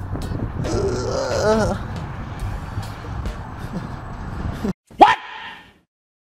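Low outdoor street rumble with a brief voice-like pitched sound, cut off abruptly a little before the end by one very loud short vocal sound that glides in pitch, then silence.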